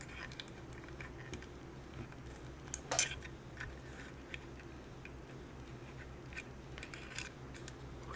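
Faint clicks and light scrapes of fingers handling a 3D-printed PLA plastic robot chassis while pushing jumper wires into it, with one sharper click about three seconds in.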